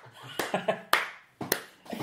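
A man laughing, with a few sharp smacks about half a second apart, like hand claps or a slap on a table.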